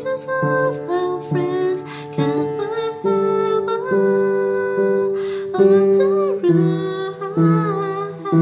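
Piano playing simple left-hand chords in the low register, changing about once a second, with a woman's voice singing the melody along.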